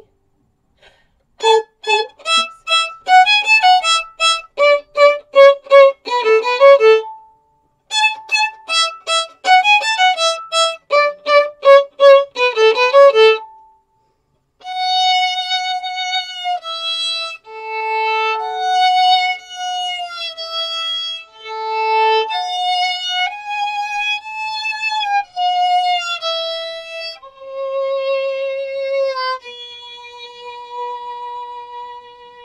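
Solo violin playing a children's action-song tune: two phrases of quick, short, separated notes, then a slower passage of long held notes joined smoothly one to the next.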